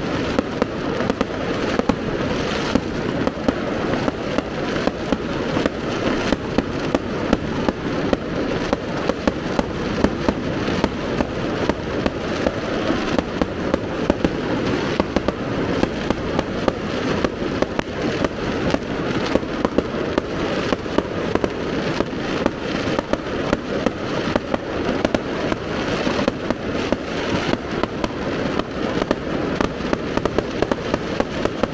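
Fireworks going off in a dense, unbroken barrage of sharp bangs and crackles, several a second.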